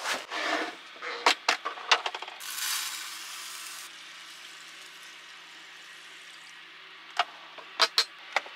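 Dry rice grains pouring from a stainless-steel cup into the inner pot of a small Thanko rice cooker, a rattling hiss lasting about a second and a half. A few clicks of the cord and pot being handled come before it, and the plastic lid clicks into place near the end.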